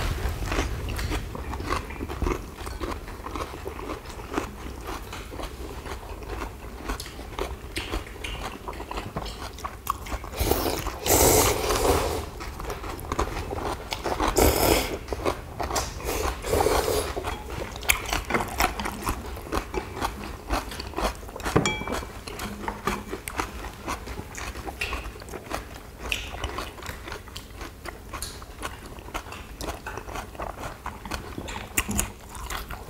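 Close-miked eating of young-radish-kimchi bibim noodles: steady chewing and mouth sounds with many small clicks of chopsticks and dishes, and a few loud slurps of noodles near the middle.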